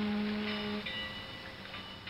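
Outro music: a loud held low note that stops just under a second in, followed by bright, sharply struck high notes as the music fades.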